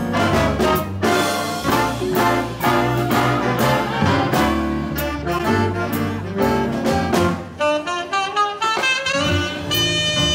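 Big band playing a swing jazz tune: full brass and saxophone sections over the rhythm section. About three quarters of the way in, a single saxophone comes forward with a solo line above the band.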